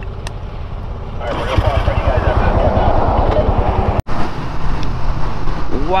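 A 1982 Honda Ascot's single-cylinder engine pulling away and getting up to speed, with wind and road noise rising from about a second in. The sound drops out for an instant about four seconds in.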